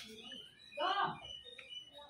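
A man's short voiced sound, a brief murmur with no clear words, about a second in, over scattered faint, short high-pitched chirps.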